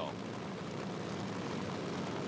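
Supercharged drag-racing funny car engine idling steadily, a low even rumble without revving.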